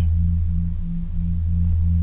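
Steady low droning tone, with a slightly higher tone above it pulsing on and off about six times a second.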